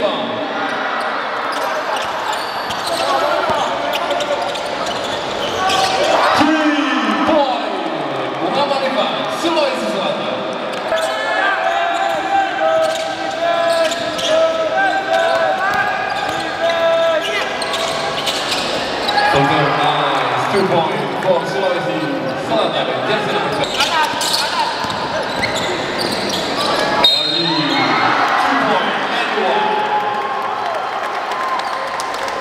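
Basketball bouncing on a hardwood court during play, with indistinct shouts and voices from players and spectators echoing in a large sports hall.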